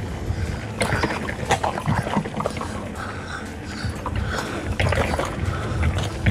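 Mountain bike rolling fast down dirt singletrack: a steady rumble of tyres on the trail with frequent sharp rattles and knocks as the bike clatters over rocks and roots.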